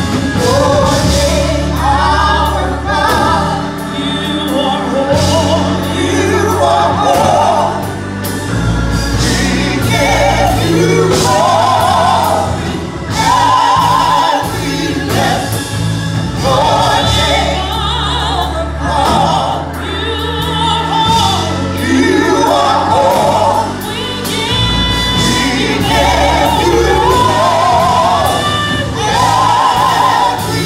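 A small gospel vocal group singing together live, with keyboard accompaniment, sustained bass notes and a steady beat.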